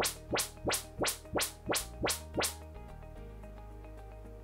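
Audyssey MultEQ XT32 test chirps from a front loudspeaker: a rapid train of identical frequency sweeps, about three a second, the receiver measuring the left front speaker during room calibration. The chirps stop about two and a half seconds in, leaving a quiet music bed.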